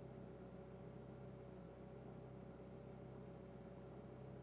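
Near silence: a faint, steady hum of room tone.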